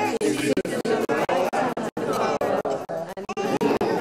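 Indistinct chatter of several overlapping voices in a church's large room, with brief sharp dropouts in the sound.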